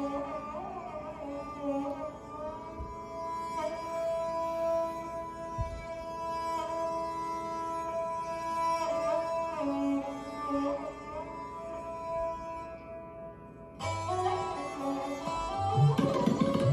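Sarangi bowed in a slow, gliding Hindustani classical melody in Raag Bageshri, with its sympathetic strings ringing beneath the held notes. Near the end the playing breaks off briefly, and tabla strokes come in as it resumes.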